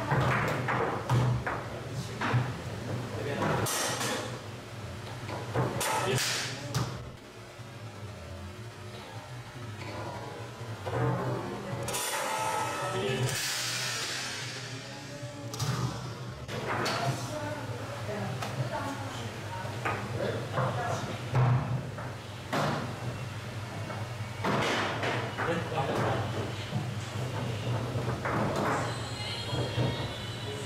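Foosball table in play: sharp knocks of the ball struck by the rod figures and hitting the table walls, with rods clacking, at irregular intervals over a steady low hum.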